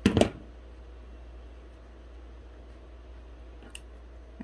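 A plastic hot glue gun set down on a cutting mat with a short clatter, followed by a steady low hum and a faint click near the end.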